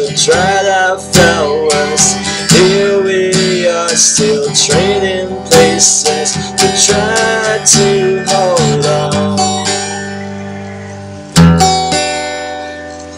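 Acoustic guitar strummed while a man sings a drawn-out, wavering melody over it. About nine seconds in the voice stops and the guitar chord rings and fades, then a fresh strum comes near the end.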